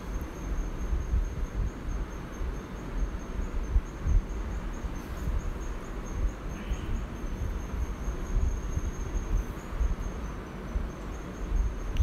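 A steady high-pitched insect trill, like a cricket's, carrying on without a break over a low rumble.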